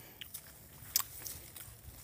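A quiet pause holding a few short, faint clicks and crackles, the clearest about a second in.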